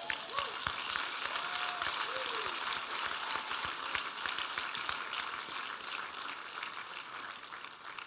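Crowd applauding: many hands clapping steadily, with a few faint voices calling out in the first couple of seconds. The clapping dies down near the end.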